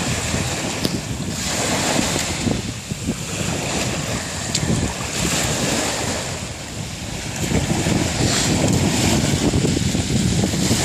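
Small sea waves breaking and washing up over a shell-and-pebble beach, swelling and easing every few seconds, with wind buffeting the microphone.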